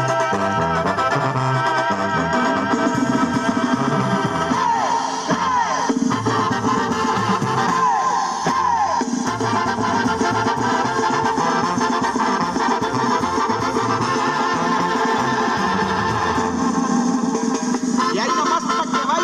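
Mexican banda music playing loudly, brass over drums keeping a steady dance beat.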